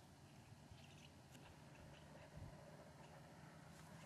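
Near silence with a very faint, distant bull elk bugle, barely above the background hiss.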